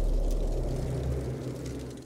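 Low, steady rumble of an intro sting's sound design, fading out over the two seconds.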